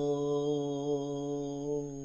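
A male voice holding one long, steady sung note at the close of a line of a Kannada harvest folk song, fading away at the end.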